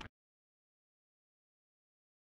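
Digital silence after a cut to a black title card.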